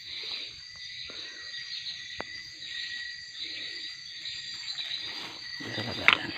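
Steady night chorus of crickets and other insects trilling continuously, with soft rustling of leaves and grass close by and one sharp click about two seconds in.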